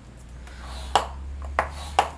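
Scoring stylus working pink pattern paper on a grooved scoring board: a faint rub of the tool along the paper, then three sharp clicks of the tip against the board about half a second apart.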